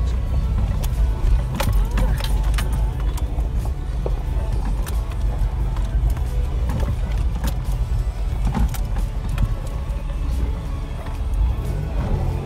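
Cab of a 1992 Toyota 4Runner on a rough dirt trail: steady low rumble of engine and tyres, with irregular rattles and knocks from the body over the bumps.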